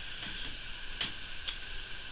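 Steady background hiss with a few short, soft clicks, one about a second in and another half a second later.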